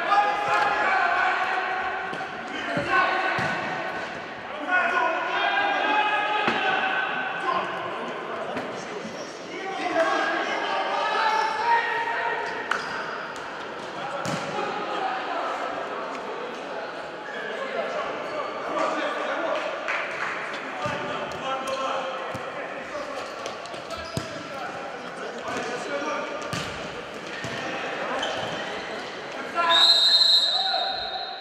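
Futsal ball being kicked and bouncing on the hard floor of a large, echoing sports hall, with players shouting and calling to each other throughout. A high whistle blast, likely the referee's, comes at the very end.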